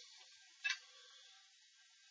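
A single short, light tick of a plastic set square set down on the drawing paper as it is repositioned, otherwise near silence with faint hiss.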